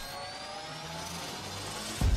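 Rising sound-effect swell: a hiss-like whoosh with several thin tones gliding slowly upward, building toward a deep hit at the very end.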